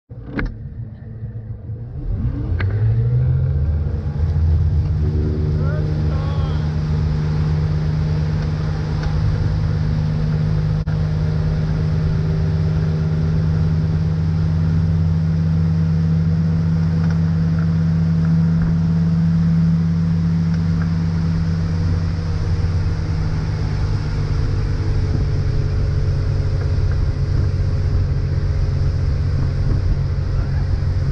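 Tow boat's engine opening up about two seconds in, its pitch rising as it accelerates to pull the rider up, then running steadily at towing speed over the rush of the wake.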